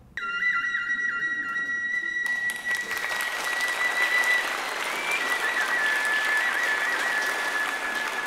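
A flute holds one long high note, wavering a little at its start and dipping slightly in pitch a little past the middle. About two seconds in, audience applause joins it.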